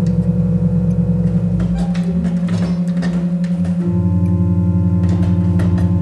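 Pipe organ holding a loud, sustained dissonant chord with low pedal notes, its lower tones beating rapidly against one another. About four seconds in, the lower part of the chord shifts to new notes while the upper tones keep sounding.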